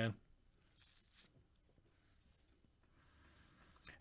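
Near silence, with only faint soft rustles of trading cards being handled and slid through a stack.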